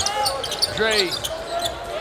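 Basketball game sounds in a large arena hall: the ball being dribbled on the hardwood court over steady crowd noise, with a short voice call about a second in.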